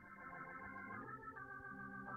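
Soft organ music: slow sustained chords with a slight waver, moving to a new chord about a second in.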